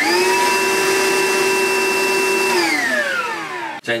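Older Milwaukee M18 cordless wet/dry vacuum switched on: its motor spins up quickly to a steady high whine. After about two and a half seconds it is switched off and winds down with falling pitch.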